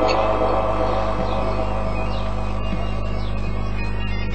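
A steady low hum, likely from the microphone and sound system, with faint scattered background noise; no voice is heard.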